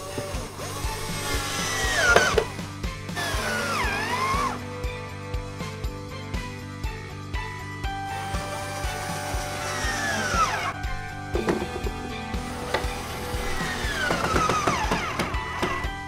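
Ryobi cordless drill driving screws in several short whirring bursts, its motor pitch sweeping as it speeds up and slows down, over background music with a steady beat.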